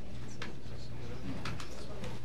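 Meeting-room background during a recess: a steady low hum under faint, indistinct voices, with a couple of brief clicks.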